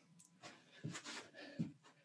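Faint, scattered scuffs and rustles of a person moving with a wooden practice sword between counted strikes: feet sliding on the floor and clothing shifting as he returns to stance.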